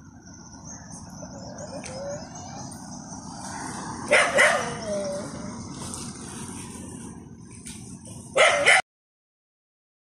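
A dog barking in two short bursts, about four seconds in and again near the end, over steady outdoor background noise with a faint high, steady drone. The sound cuts off suddenly just after the second bursts.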